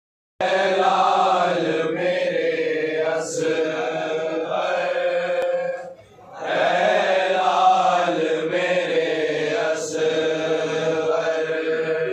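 Male voices chanting a nauha, a Shia lament, with long drawn-out held notes. There is a brief break a little before halfway.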